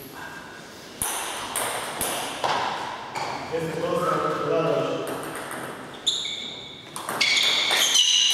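Table tennis ball bouncing and being struck. There are a few single ringing bounces as the players get ready, then a run of quick hits on table and bats as a rally starts near the end. A man's voice calls out in the middle, as the umpire signals.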